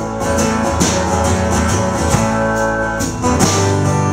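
Live band playing an instrumental stretch between vocal lines: strummed acoustic guitar over electric bass and a drum kit with cymbals, at a steady full level.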